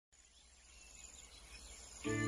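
Near silence: a faint hiss with faint chirps, slowly fading in.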